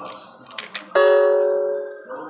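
A spoon knocked once against the rim of a metal cooking pot: a single ringing metallic tone about a second in that fades away over about a second, after a few light clicks of stirring.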